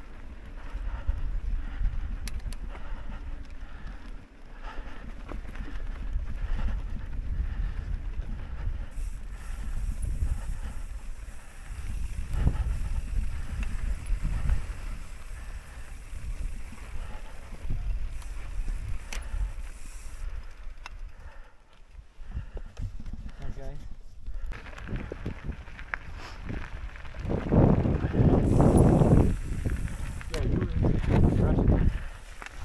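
Mountain bike rolling downhill on a dirt track: a steady low tyre rumble and wind on the microphone, with scattered clicks and rattles. It gets louder a few seconds before the end.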